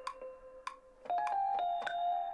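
Electric-piano-style notes played on a MIDI keyboard: one note held and fading, then a higher note struck about a second in and held, with a few faint clicks.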